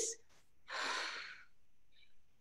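A woman takes one audible breath, about a second long, through a piece of fleece fabric held up to her mouth, showing that the fleece is breathable.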